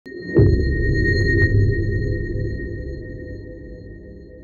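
Logo-reveal sound effect: a deep low hit about a third of a second in, with a steady high tone ringing over it, the whole sound slowly fading away.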